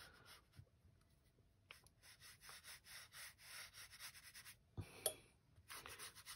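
Faint, soft brush strokes of a round watercolour brush laying a very thin wash on rough rag watercolour paper, a quick run of light strokes. A short, slightly louder sound comes about five seconds in.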